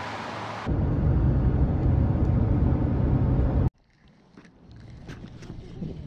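Wind buffeting the microphone: a loud, low rumble that starts suddenly about a second in and cuts off abruptly after about three seconds. What follows is much quieter, with a few faint scattered clicks.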